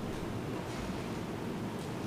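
Steady low background noise of a large room, with a few faint soft rustles.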